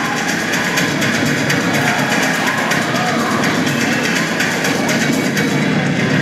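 Recorded music with singing and a steady beat, played loudly over a sound system in a large gym.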